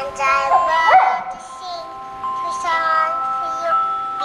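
Boxer dog howling along to music: one short rising yowl about a second in, over a steady electronic melody that runs on throughout.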